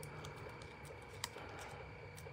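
Faint small clicks and rustles of fingertips picking foam adhesive dimensionals off their backing sheet, with one sharper click a little past a second in.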